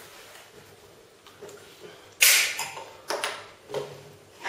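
Bottles and glasses being handled: a sudden hiss about two seconds in that fades within half a second, then two shorter noises.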